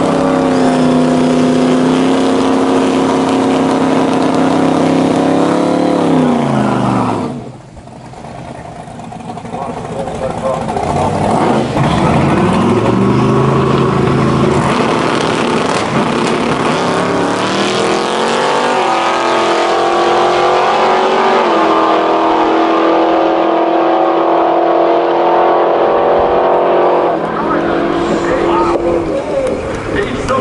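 Supercharged big-block V8 of a Mk1 Ford Zephyr drag car, very loud: held at steady high revs for several seconds, then the revs fall away. After that it revs in rising glides, and then runs at full throttle down the strip with a drop in pitch at a gear change partway through, before falling away near the end.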